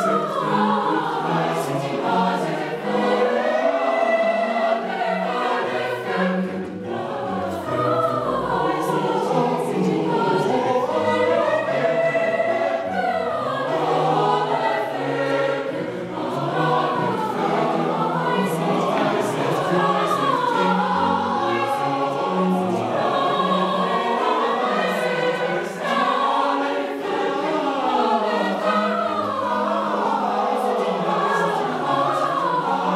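A large mixed choir singing continuously, accompanied by a digital piano and a cello.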